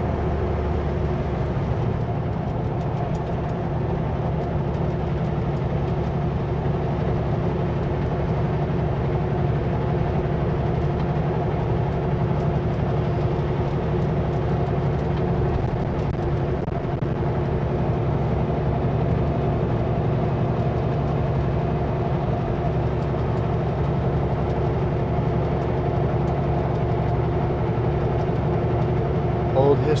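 Kenworth W900L semi truck driving at a steady cruise: a steady engine drone with road and tyre noise, unchanging throughout.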